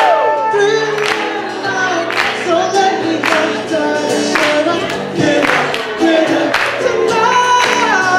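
Live acoustic guitar with amplified singing: a sliding, held vocal melody over the guitar, with a sharp beat about once a second.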